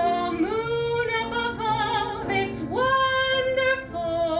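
A woman singing a Broadway show tune live into a microphone with grand piano accompaniment. Her voice slides up into long held notes with vibrato, the highest one about three seconds in.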